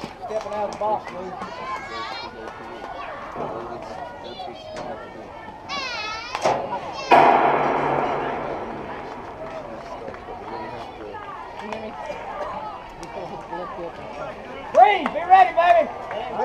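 Girls' and coaches' voices calling out around a softball field, with a sudden loud clatter about seven seconds in that fades away over about two seconds.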